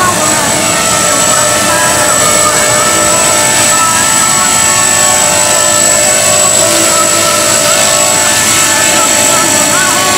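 Electric 450-size RC helicopter (HK450 in an MD500 scale body) flying close by, its motor and rotors giving a steady high-pitched whine with several lower steady tones. It comes down and touches down near the end.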